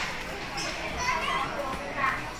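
Background voices of children and other shoppers in a busy toy store: indistinct chatter with children's high-pitched calls.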